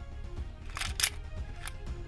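A few sharp clinks of silver coins shifting against each other in a small wooden chest as it is tilted, over background music.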